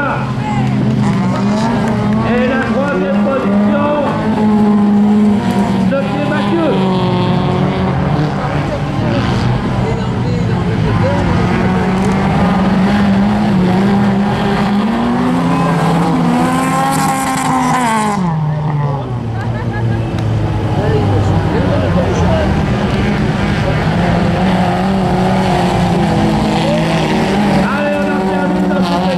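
Several small race cars' engines revving hard around a dirt track, their pitch climbing under acceleration and dropping as the drivers lift for the bends. About two-thirds of the way through, one engine rises and falls sharply over a couple of seconds, with a burst of hiss from the loose dirt.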